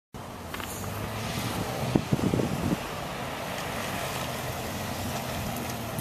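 Steady outdoor background of distant road traffic and wind on the microphone, with a few brief low bumps about two seconds in.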